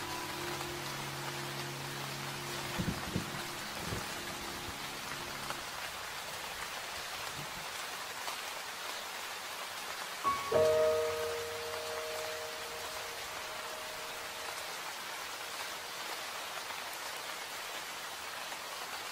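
Steady rain falling, mixed with slow, sparse music: held notes fade away in the first few seconds, and a new soft chord of sustained notes comes in about ten seconds in and slowly dies away.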